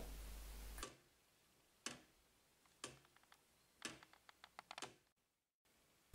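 Faint, slow ticking of a handmade wooden clock's escapement, the pallets releasing the escape wheel about once a second: four evenly spaced ticks, then a short run of quicker, fainter clicks.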